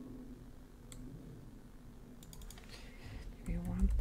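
A single click about a second in, then a quick run of a few computer keystrokes past the middle as a number is typed in.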